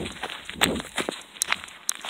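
Footsteps of sneakers on dry, gravelly dirt: several steps at a walking pace.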